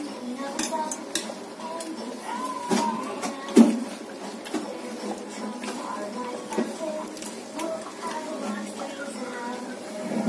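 Metal ladle clinking and scraping against an aluminium cooking pot as food is dished out, in scattered knocks, the loudest a clank about three and a half seconds in.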